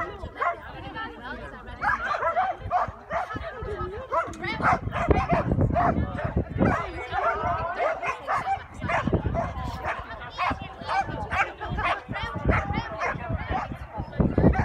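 Collie barking and yipping over and over, short high calls in quick succession, with a person's voice calling out.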